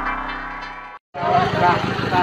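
An electronic logo jingle fading out, a brief dropout to silence about a second in, then several voices over a busy background noise as street-video audio cuts in.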